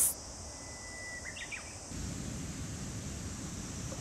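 Outdoor field ambience: a steady high insect buzz, a short bird chirp a little over a second in, and a low rumble that comes up at about two seconds.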